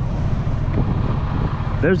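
Diesel engine of a semi truck heard from inside the cab, a low uneven rumble.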